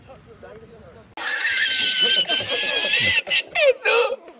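A man laughing hard in a high-pitched laugh that cuts in suddenly about a second in and breaks into short gasping bursts near the end; before it, a faint voice.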